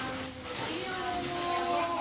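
Background voices of people in a busy room, with one voice holding a long steady note from about half a second in.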